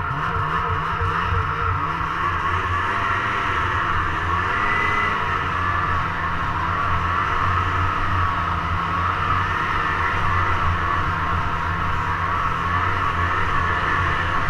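Snowmobile engine running steadily under way as the sled travels along a snowy trail, its pitch wavering slightly up and down.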